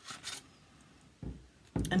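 A handheld paper punch and cardstock being handled on a desk: a brief rustle of card at the start, then two dull knocks in the second half.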